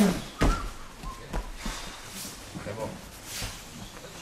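A heavy thud about half a second in as a man collapses onto the tatami judo mats, knocked down, followed by a few softer knocks and shuffles on the mat.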